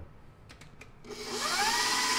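KitchenAid stand mixer with its dough hook, kneading bread dough. About a second in, the motor starts with a rising whine and then runs steadily.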